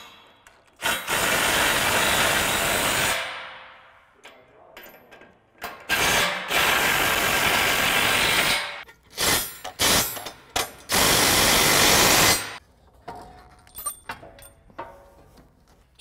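Cordless impact wrench driving bolts in three runs of a couple of seconds each; the first winds down as it stops. Between the second and third runs come several short bursts of the tool.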